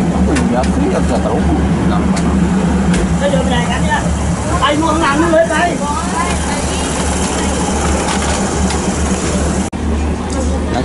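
Steady low hum of a diesel train's engine idling at the platform, heard from inside the carriage, with other passengers talking around the middle.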